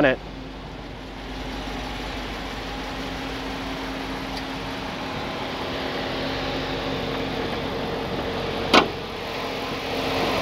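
A 2014 Dodge Challenger R/T's 5.7-litre Hemi V8 idles with a steady, smooth hum that grows a little louder about a second in. A single sharp click comes near the end.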